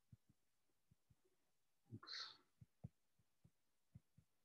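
Near silence, broken by faint soft taps of a stylus on a tablet screen as words are handwritten, with a brief faint breath about two seconds in.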